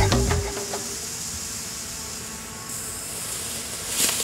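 Background music stops about half a second in, leaving a faint hiss. Roughly two-thirds of the way through, a high hiss starts and grows louder toward the end: ignition beginning at a sugar rocket motor with potassium nitrate and sucrose fuel.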